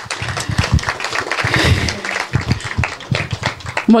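Audience applauding, a dense patter of hand claps.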